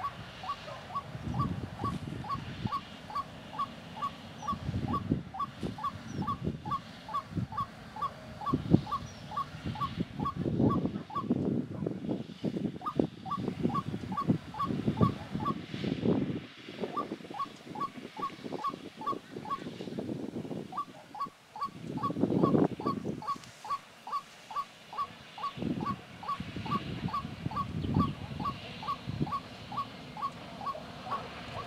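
Animal calls outdoors: a short high chirp repeats steadily about three times a second, pausing briefly twice. Under it, lower pulsed calls come in irregular runs.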